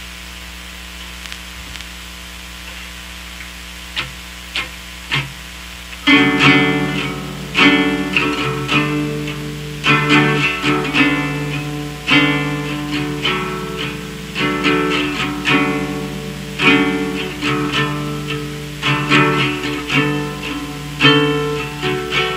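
Guitar music: over a steady low hum, a few single plucked guitar notes sound, then about six seconds in a guitar comes in louder, playing ringing picked chords in a steady run.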